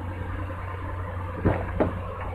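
Steady low hum of the idling Nissan Frontier pickup, heard from beside the open driver's door, with two short knocks about a second and a half in.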